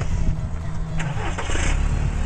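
Loud steady rumble of an open-top convertible's running engine, with wind rumbling on the microphone, and a sharp click about a second in.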